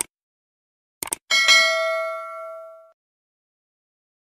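Subscribe-button animation sound effect: a click, then two quick clicks about a second in, followed by a bright notification-bell ding that rings and fades out over about a second and a half.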